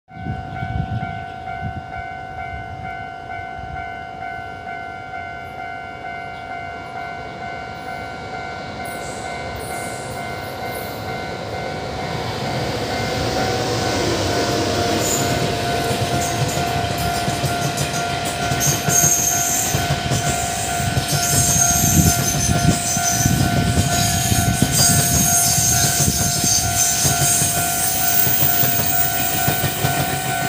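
Level-crossing warning signal ringing with a steady, pulsing chime as an E500 electric locomotive hauling thirteen Chu-Kuang coaches approaches. The rumble and clatter of the wheels over the rails grows from about twelve seconds in and is loudest as the long train passes.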